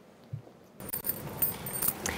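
Faint rustling and light knocks of people moving on a stage, starting abruptly a little under a second in, after a single soft thump.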